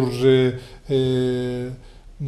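A man's voice speaking in Catalan, with one syllable drawn out on a steady pitch for most of a second.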